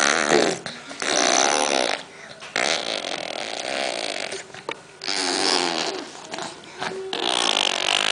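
A baby blowing raspberries with a mouthful of purée: several wet, buzzing lip bursts of about a second each, with short pauses between, as it refuses the food.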